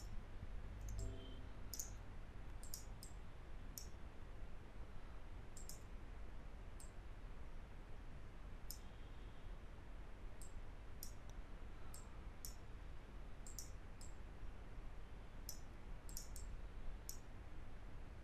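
Computer mouse clicking: about two dozen short, sharp clicks at an uneven pace, some in quick pairs, over a faint low hum.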